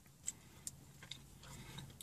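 Faint chewing with the mouth closed on a bite of a fried, flaky taco shell: a few soft clicks, two of them close together in the first second, over a low hum.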